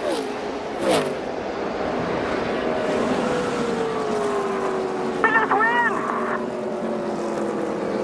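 NASCAR stock car V8 engines on the race broadcast, their pitch sliding slowly downward as the cars slow under a caution at the finish. A brief voice cuts in about five seconds in.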